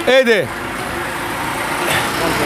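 Honda 100 cc motorcycle's single-cylinder four-stroke engine idling steadily, heard at the exhaust.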